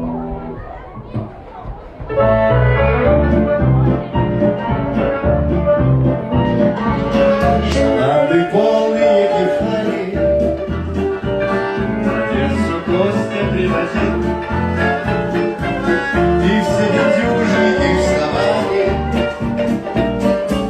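A live band of guitars, saxophone and drums playing an instrumental passage, kicking in loudly about two seconds in with a steady bass beat.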